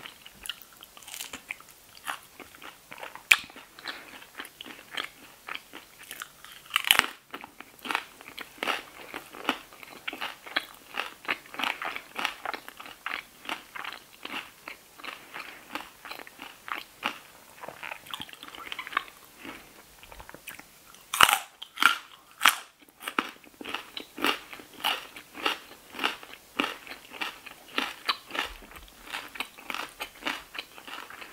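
Close-miked chewing of loaded tortilla-chip nachos: a steady run of crisp, crackling crunches several times a second, with a few louder bites breaking through, the loudest about three-quarters of the way in.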